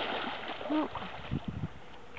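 A young seal splashing in shallow water as it turns and dives away. The splashing is strongest at first and dies down within about half a second, followed by a few low sloshes.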